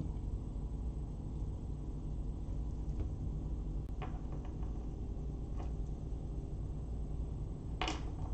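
Quiet room tone with a steady low hum. A few faint clicks come through, and a sharper one just before the end.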